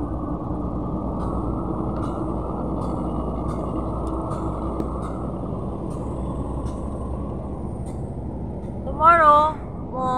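Steady low rumble of an idling vehicle engine with a faint steady hum in it. About nine seconds in, a person's voice gives a short, loud call.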